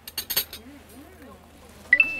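Cutlery and dishes clinking a few times in quick succession near the start, against faint chatter at a meal table. A short, sharp high-pitched squeal sounds right at the end.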